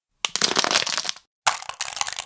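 Thin plastic water bottle being crushed: two bursts of dense crinkling and crackling, each about a second long, with a short pause between them.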